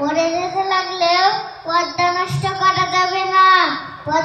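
A young girl's voice declaiming in a sing-song chant, in two long, drawn-out phrases that each fall in pitch at the end.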